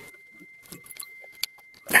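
Light, scattered metallic clicks and clinks from a tin money box full of coins being handled and pried at by hand, with a sharp, louder clack right at the end.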